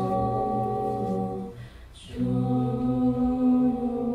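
Mixed a cappella vocal group singing sustained chords in close harmony. The chord breaks off about halfway for a short breath, with a soft 's' sound, and a new chord is held from just past the middle.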